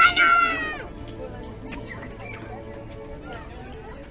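A high-pitched voice gives one loud squeal-like shout that falls in pitch during the first second, then steady crowd chatter continues more quietly.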